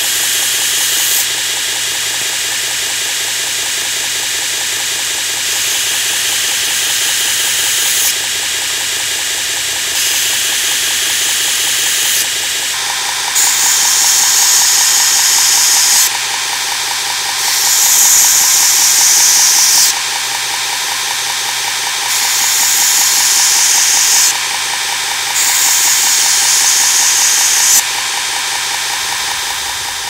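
2x72 belt grinder running at low speed, 25% on its variable-speed drive, with a steady motor hum and whine. A steel twist drill bit is pressed against the moving belt in repeated passes of two to three seconds each. Each pass adds a loud grinding hiss, and the passes grow stronger in the second half.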